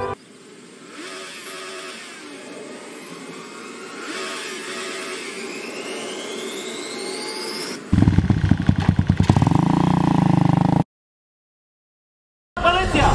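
A motorcycle engine bursts into life about eight seconds in, firing loudly in quick pulses and then revving up for about three seconds before cutting off abruptly. Before it, a quieter stretch with a thin whine rising slowly in pitch.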